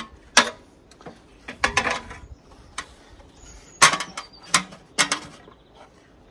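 Wooden roost box and tools being handled on an aluminium stepladder: a string of irregular knocks and clicks, several close together a little after halfway.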